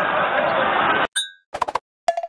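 Crowd laughter and chatter cuts off abruptly about a second in. A short bright chime follows, then a quick run of clinking notes: the MadLipz app's end-card jingle.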